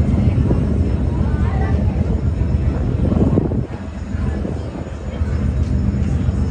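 A large ship's diesel engines run at the quay, a steady low rumble with a hum, dipping slightly in level about midway.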